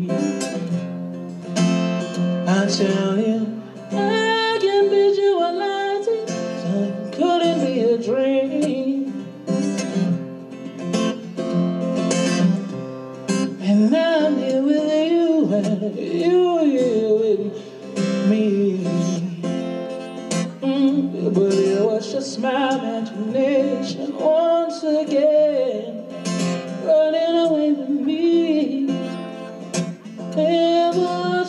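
A man singing into a microphone while strumming an acoustic guitar: a live solo song.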